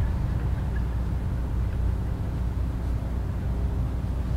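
Room tone: a steady low hum with no other distinct sounds.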